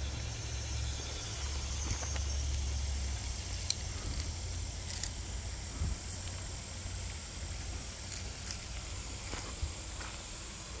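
Footsteps over gravel, shells and dry twigs, with scattered light clicks and crunches. A low rumble stops about three seconds in.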